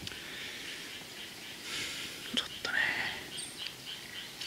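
Quiet outdoor background with a brief breathy, whisper-like sound about halfway through, two light clicks just after it, and a faint high chirp near the end.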